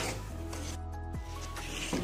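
A wooden spoon scraping and stirring mango pulp and sugar in a non-stick pan, over soft background music with steady held low notes.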